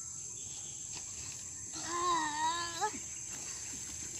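A steady, high-pitched chorus of insects, and about two seconds in a single drawn-out, wavering animal call lasting about a second, like a bleat, rising at its end.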